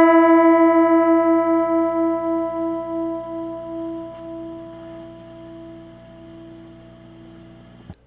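Electric guitar's B string fretted at the fifth fret and open high E string ringing together on the same E note, fading slowly. The two pitches beat against each other in a pulsing wobble that slows as the high E tuning peg is turned: the strings are slightly out of tune and being brought into unison.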